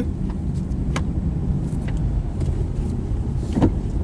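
Car cabin noise while driving: a steady low rumble of engine and road, with a couple of faint clicks.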